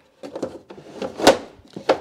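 Bamboo expandable silverware organizer being pulled open in a drawer: wood sliding and knocking against wood in a few short scrapes, the loudest about a second in, with a sharper knock near the end.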